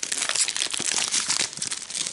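The plastic foil wrapper of a Pokémon card booster pack crinkling and crackling continuously as it is torn open by hand.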